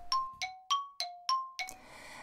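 A short chime jingle: about six bright bell-like notes struck in quick succession, alternating between a lower and a higher pitch, each ringing briefly before the next.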